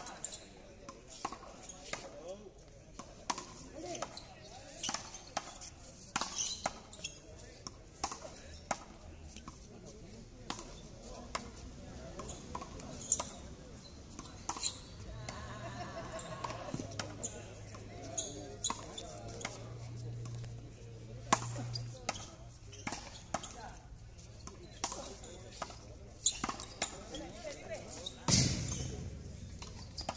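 A frontón rally: the ball smacks against the front wall, the ground and the players' strikes in a quick, irregular run of sharp cracks. A low hum runs under it in the middle stretch.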